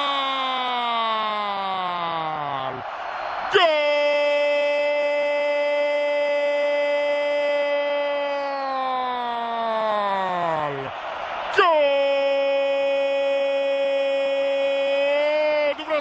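A Spanish-language football commentator's drawn-out goal cry, "gol", held as three very long shouts. The first carries over from before and dies away with a falling pitch. The second starts about three and a half seconds in and is held for some seven seconds. The third begins just under twelve seconds in and holds until near the end. Each call drops in pitch as it trails off, announcing a goal just scored.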